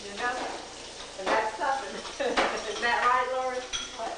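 Dishes and cutlery clinking at a kitchen sink as they are washed, under indistinct talk.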